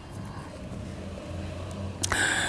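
A low, steady background hum with a faint haze of noise.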